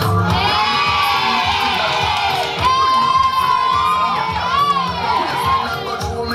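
Crowd of spectators screaming and cheering in high voices over dance music. It swells just after the start, surges again about three seconds in, and thins out near the end.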